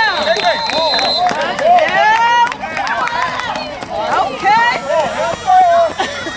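Spectators at a youth football game shouting and cheering from the sideline, many voices overlapping.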